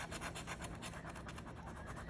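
A coin scraping the coating off a paper scratch-off lottery ticket in quick, faint back-and-forth strokes, about ten a second.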